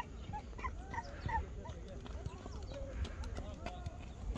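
Faint, distant voices calling and chattering across an open dirt field, heard as many short rising-and-falling calls, with a low wind rumble on the microphone and a few light clicks.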